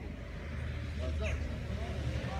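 A steady low rumble with faint voices of people talking.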